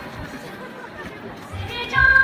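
Audience chatter during a lull in the performance music, with the music and a low drum swelling back in near the end.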